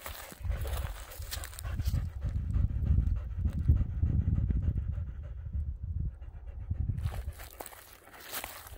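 A dog panting close by in a quick, even rhythm.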